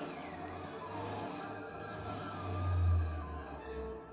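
Cartoon film soundtrack heard off a TV: dramatic music over a deep rumbling sound effect of the castle magically transforming. The rumble swells to its loudest about three seconds in, then falls away.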